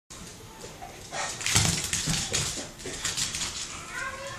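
A small dog's excited barks and yelps, several in quick succession from about a second in, as it chases a laser pointer dot.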